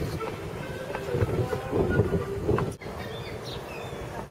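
Outdoor wind buffeting the microphone as an irregular low rumble, with faint voices in the background. The sound breaks off abruptly at an edit about three seconds in, and a steadier, quieter outdoor hiss follows.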